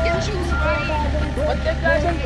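Several people's voices talking and calling over one another, over a steady low rumble.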